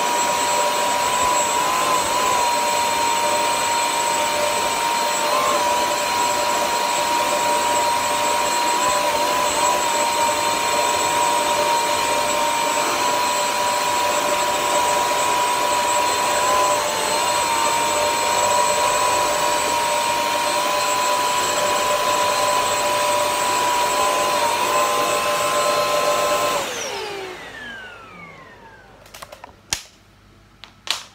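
Bissell CrossWave wet-dry floor cleaner running over a rug: a steady high motor whine that dips briefly in pitch now and then. Near the end it is switched off and the motor winds down, falling in pitch, followed by a few sharp clicks.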